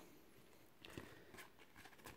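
Near silence, with a few faint, soft taps and clicks of cardboard trading cards being handled and stacked.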